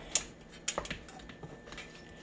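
Scattered light clicks and taps of hands pressing flattened biscuit dough and shifting a metal muffin tin on a countertop, the sharpest few in the first second.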